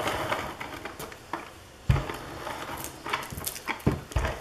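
Handling noise on a craft table: paper rustling and a clear plastic storage container being moved about, with a knock about two seconds in and a few quick clicks near the end.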